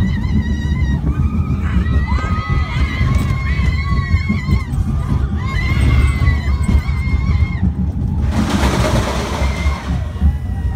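Amusement-ride riders screaming in long, high-pitched, wavering cries, over heavy wind buffeting the phone microphone; a burst of rushing noise comes in about eight seconds in.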